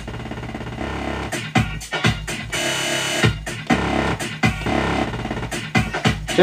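Electronic dance track played from the Djay for iPad app, chopped by its bounce-loop function. For the first three seconds it repeats short fractions of a beat in a fast stutter while the loop buttons are held; then the normal beat resumes. These are strange effects.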